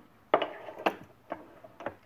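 Four sharp metal clicks and knocks from an aluminum mold and a quick-release toggle clamp being handled on a benchtop injection molding machine as the mold is set against the mold stop. The first knock comes with a brief scrape.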